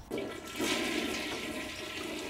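A toilet flushing: a sudden rush of water that starts just after the beginning and keeps running.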